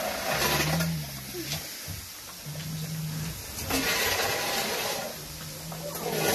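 Bear cubs humming while they feed: a low, steady, motor-like buzz about a second long, repeated three times, the contented sound cubs make while eating.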